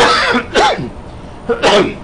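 A lecturer coughing and clearing his throat: three short harsh bursts in quick succession, the last about a second and a half in.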